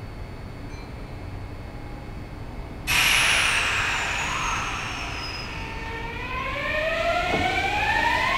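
Kintetsu 9820 series electric train starting out of the station. A sudden loud hiss and high whine begin about three seconds in. Then the inverter-driven traction motors give several tones that rise together in pitch as the train accelerates.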